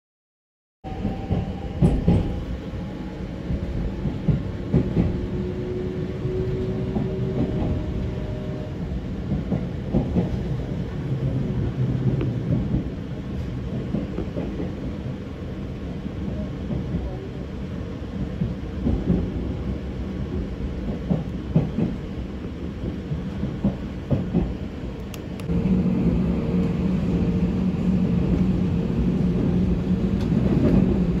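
Local electric train running, heard from inside the carriage: a steady rumble of wheels on rail with scattered clicks from the track. About 25 seconds in, a louder steady two-tone hum joins the rumble.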